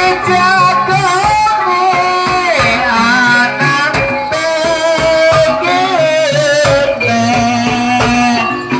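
Banyumasan ebeg dance music: a singer's long, wavering melodic line over gamelan-style pitched percussion and drum strokes, playing loudly without a break.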